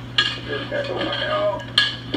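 Glass and metal clinks from a glass-fronted snake enclosure being opened and reached into with a snake hook: two sharp knocks, one just after the start and one near the end. A steady low hum and faint voices run underneath, all heard played back through a TV.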